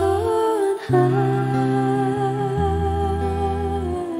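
Live acoustic pop song: a woman's voice sings long, wordless held notes, a short one and then, after a brief break just before a second in, a longer one that falls away near the end. Low bass notes and guitar play underneath.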